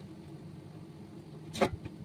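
A steel plate clanks sharply against metal about one and a half seconds in, the loudest sound here, over a steady low background hum.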